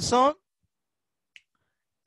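A man's spoken word ending in the first third of a second, then near silence with a single faint, short click about a second and a half in.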